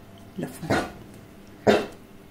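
A dog barking: a couple of short barks about half a second in and another near the end.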